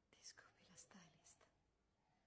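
Very faint whispered speech: a few short, soft breathy words in the first second and a half.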